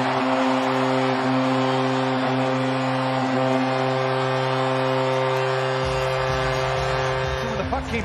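Hockey arena goal horn blowing one long steady note over a cheering crowd, the horn cutting off near the end; it signals a home-team goal.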